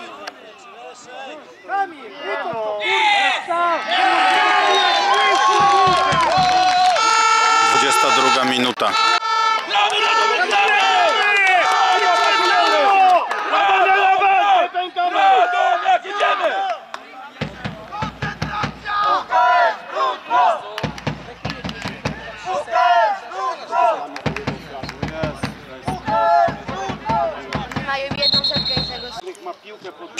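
Shouting at a football match: many voices call over one another for about fourteen seconds, then thin to scattered single shouts. A short, high whistle sounds near the end.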